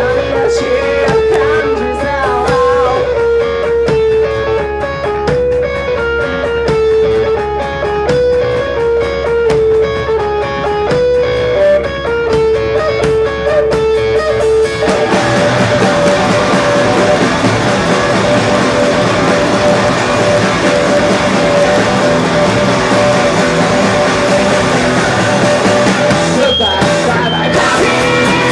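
Three-piece rock band playing live without vocals: guitar picks out a repeating melodic riff over bass and drums, then about fifteen seconds in the band comes in fuller and denser, with a held guitar note over the noisier wash.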